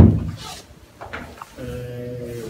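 A loud thump at the start, fading quickly, followed about a second and a half later by a man's drawn-out, steady hesitation sound before he speaks.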